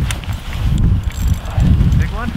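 Wind buffeting the microphone on open ice: low, gusty rumbling that swells near the start, about a second in and again near the end.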